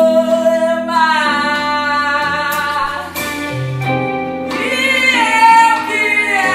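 A woman sings a bossa nova song live, backed by electric guitar, keyboard and drums. She holds long notes with slow slides in pitch.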